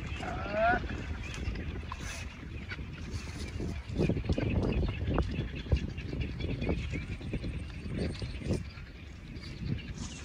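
A long stick scraping and poking through a smouldering pile of burnt straw and ash as the roasted eggs are raked out: irregular soft knocks and rustles, thickest from about four seconds in.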